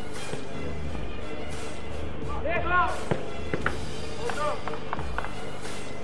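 Footballers shouting across a five-a-side artificial-turf pitch, two short calls about two and a half and four and a half seconds in, with a few sharp knocks of the ball being kicked in between, over a steady background drone.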